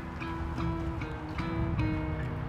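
Background music: a melody of held notes, a new note about every half second.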